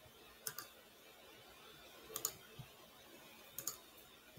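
Faint computer keyboard keystrokes in three short clusters of clicks as text is typed.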